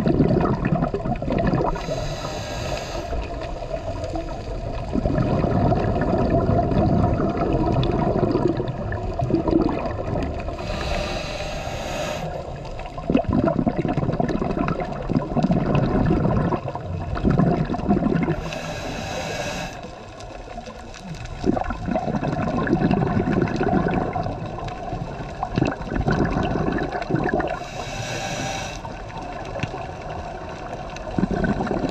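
Scuba regulator breathing underwater: four short hissing inhalations about eight to nine seconds apart, with exhaled bubbles rumbling and gurgling in between.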